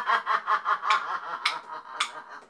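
A woman's voice in a fast run of short pitched syllables, about eight a second, that sounds like laughter, with two sharp clicks in the second half.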